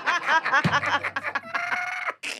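A man laughing hard in quick, high-pitched cackles, ending in one long held squeal of laughter.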